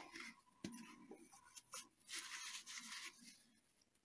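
Faint handling at a painting table: a few light knocks, then a soft scraping rustle of about a second as a blank hardboard panel is slid across the plastic sheet covering the table.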